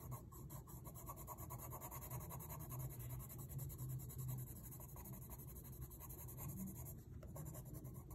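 Brown coloured pencil shading on sketchbook paper: a faint, steady scratching of the lead against the paper.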